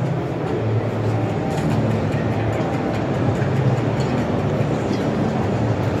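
Steady background din of a busy trade-fair hall, with a low hum and faint music.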